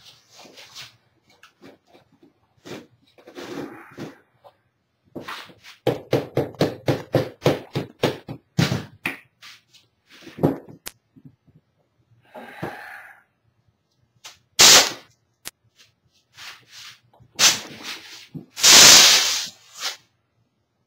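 Rubber mallet blows on a plaster mould, struck to knock a stuck cast plug loose: scattered knocks, then a fast even run of blows, about five a second, a few seconds in. Near the end come two bursts of hissing noise, the second about a second long.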